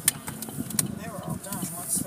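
Indistinct voices inside a moving car, over the low, steady road and engine noise of the cabin.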